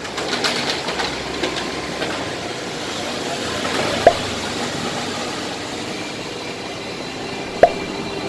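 A shopping trolley rolling and rattling over a hard floor, over a steady hum of background noise, with a sharp knock about four seconds in and another near the end.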